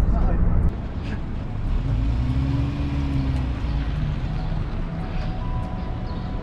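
Low rumble of a motor vehicle, louder for the first moment, with an engine note that rises and then falls about two to three seconds in.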